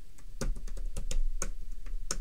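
Computer keyboard typing: a quick run of key clicks starting about half a second in, as a line of code is typed.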